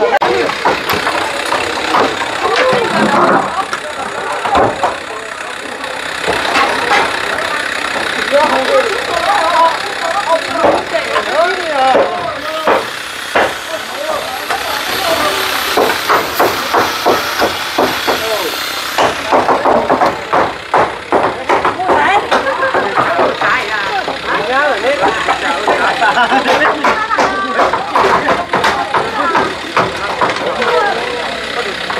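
Several people talking and calling over one another, with frequent knocks and clatters of corrugated roofing sheets and timber beams being pulled off a roof and handled. The knocks come thickest in the second half.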